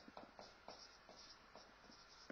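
Faint scratching of a marker writing on a whiteboard, in a run of short strokes.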